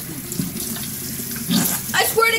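Water running from a bathroom sink tap into the basin, steady, with a brief louder surge about one and a half seconds in.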